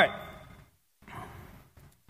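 The end of a man's spoken "right", then a pause with a soft breath out near the microphone about a second in.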